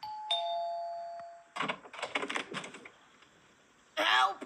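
Two-note ding-dong doorbell chime, the second note lower, ringing out and fading over about a second and a half. A brief stretch of indistinct, muffled sound follows.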